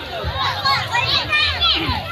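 Children's high-pitched shouts and calls while playing in shallow sea water, loudest from about half a second in to near the end, over a babble of other voices.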